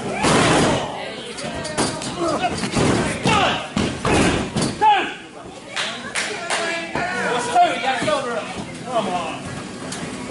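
Untranscribed shouting and voices from ringside, broken by several sharp thuds of wrestlers' bodies hitting the ring mat.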